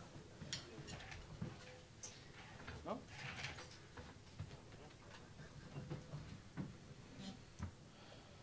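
Quiet hall with faint murmured talk and scattered small clicks and taps from the stage; no music is playing.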